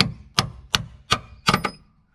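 A hammer tapping a long steel body-mount bolt down into its hole, six sharp metal strikes about every 0.4 s, the last two close together. The longer body-lift bolt is a tight fit and needs persuasion to go in.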